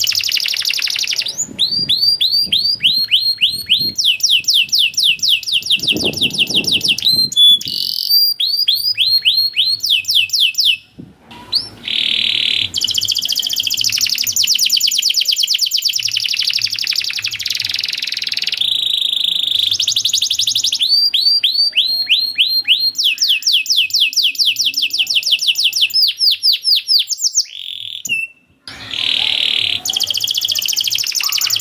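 Domestic canary singing a long song of fast trills: runs of rapidly repeated, sweeping high notes, alternating with dense rolling passages. The song breaks off briefly twice.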